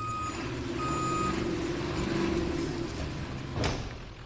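Ambulance backing in with its engine running: its reversing alarm beeps twice, about a second apart, then stops while the engine keeps running. A short sharp noise comes near the end.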